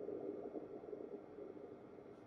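Quiet room tone: a faint steady hum with no distinct event.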